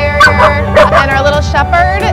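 A crated dog yipping and whining in short, rising and falling calls, over background music.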